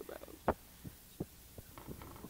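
A handful of dull, irregularly spaced thumps on an experimental 1980s cassette recording, the loudest about half a second in, over a faint low hum.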